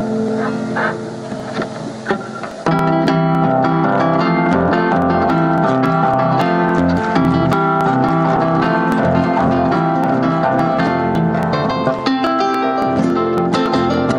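Live chacarera played on harp, acoustic guitar and bombo legüero drum, with plucked string melody over a steady drum beat. The ensemble comes in louder and fuller about three seconds in.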